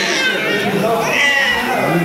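An infant's high-pitched vocalizing: two drawn-out cries that bend up and down in pitch, one at the start and one about a second in, in an echoing pool hall.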